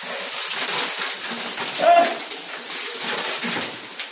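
Shower head spraying water over an ice-filled bathtub, a steady hiss. A short vocal sound breaks in about two seconds in.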